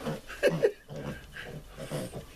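Piglets grunting: a few short grunts in the first second, fainter ones after.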